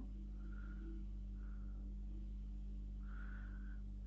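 Quiet room tone with a steady low electrical hum, and a few faint soft tones that come and go.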